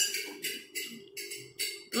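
Background music with a steady, light percussion beat of about three high ticks a second.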